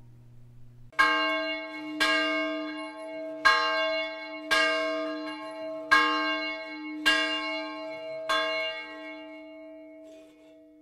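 A single large church tower bell tolling to call to worship: seven strokes a little over a second apart, its low hum ringing on between strokes and dying away near the end.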